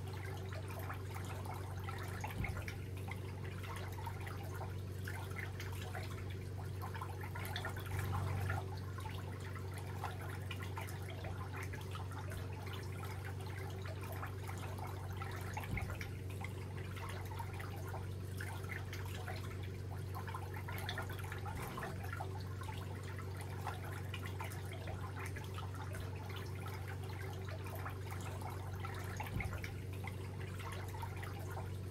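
Hands massaging a bare foot: faint, wet-sounding rubbing and squishing of skin, over a steady low hum, with a few soft knocks.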